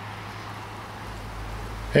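Faint outdoor background noise: a steady hiss, with a low rumble coming in about a second in.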